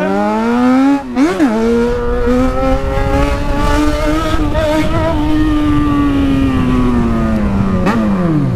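Yamaha XJ6's inline-four engine through an open exhaust pipe, ridden hard. There is a quick shift about a second in, then the pitch climbs, holds high and falls near the end as the throttle is let off.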